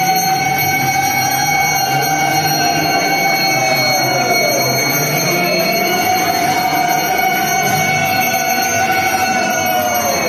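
Temple hand bell rung continuously during an arati lamp offering, with a long sustained tone under it that sags in pitch and breaks off about four seconds in, then starts again and sags again near the end.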